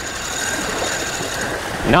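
A Slammer 4500 spinning reel being cranked steadily, a fish on the line, making a continuous whirr over wind and water noise.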